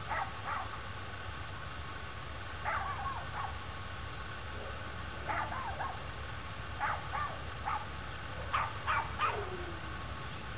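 Short animal calls, about a dozen in small groups of two or three, the last one near the end sliding down in pitch, over a steady low background hum.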